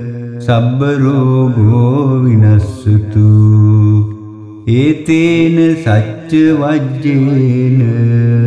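Solo voice chanting Pali Buddhist pirith verses in a slow, drawn-out melody, holding long notes that bend in pitch, with short pauses for breath about three and four and a half seconds in.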